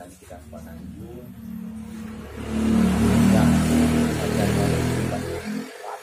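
A motor vehicle engine passing close by, growing louder, loudest through the middle, then dropping away near the end.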